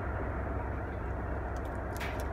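Steady low rumbling background noise, with a few faint clicks near the end.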